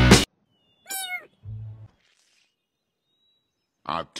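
Music cuts off abruptly just after the start. About a second in comes one brief high-pitched call that wavers in pitch, followed by a short low hum and then silence.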